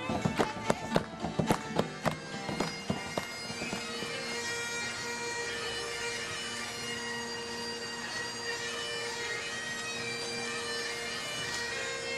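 Bagpipes playing a tune over steady drones, with sharp, quick beats, about four a second, in the first few seconds that then stop.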